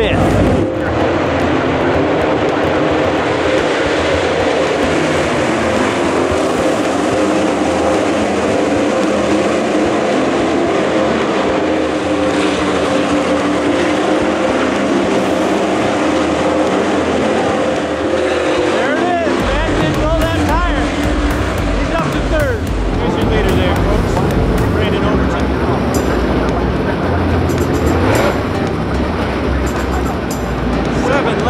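A pack of dirt late model race cars running at speed around the track, their V8 engines mixed with background music. About two-thirds of the way through, a heavier low end comes in.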